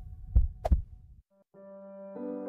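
Heartbeat sound effect: one lub-dub double thump about half a second in, over a faint steady hum, fading out. After a brief silence, soft sustained keyboard chords begin near the end.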